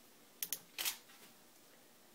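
Camera shutter clicking as a Pluto Trigger water-drop rig fires a test shot: a quick double click about half a second in, then a slightly longer click shortly before the one-second mark.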